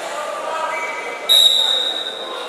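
A referee's whistle blown once, a little past halfway: a sudden, loud, steady high tone that fades over about a second, signalling the start of the wrestling bout. Voices chatter in the hall underneath.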